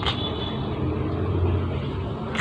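A steady low rumble, with a single short click at the very start.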